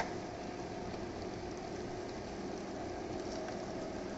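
A stir-fry of meat, seafood and vegetables simmering in its thickened sauce in a wok on an induction cooker, with a steady, gentle sizzle and a faint steady hum.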